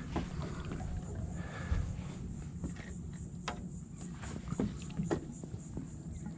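A hooked redfish splashing and thrashing at the surface beside a boat as it is led in and grabbed by hand, with a few short knocks and splashes and a steady low rumble throughout.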